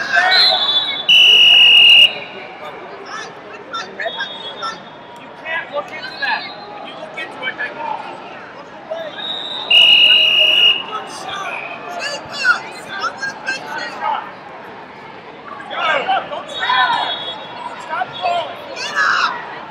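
Two loud, steady referee's whistle blasts, each about a second long, the first about a second in and the second about ten seconds in, over the chatter and scattered shouts of a crowd.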